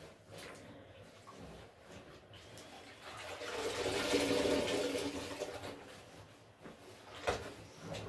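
Water sloshing in a bucket of dye bath as a soaked silk dress is worked in it. About three seconds in, the dress is lifted out and water streams and splashes back into the bucket for a couple of seconds before fading. A short splash follows near the end.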